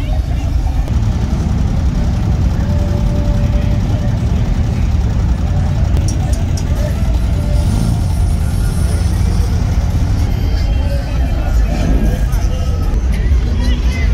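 Cars passing slowly in cruise traffic, their engines giving a steady low rumble, with music and crowd voices mixed in.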